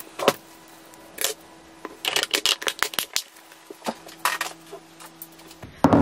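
Kitchen handling noises: scattered light clicks, taps and clinks as a knife and food items are handled on a kitchen bench, over a faint steady hum that stops shortly before the end.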